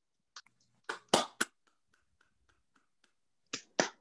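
Scattered hand claps from a few people, heard over a video call as separate sharp claps with gaps of silence between them rather than a full round of applause. The loudest claps come about a second in and again near the end.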